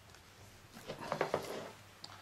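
A push pin being pressed into plastic embossing film on a drawing board: a short cluster of crackles and small taps about a second in.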